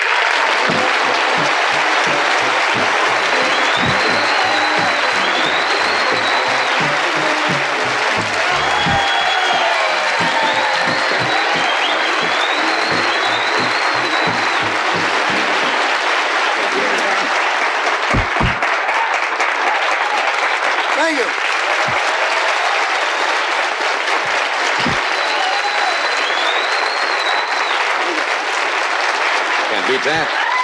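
Studio audience applauding, a steady wash of clapping. A studio band plays the guest's walk-on music under it for about the first half, then stops, and the applause carries on alone.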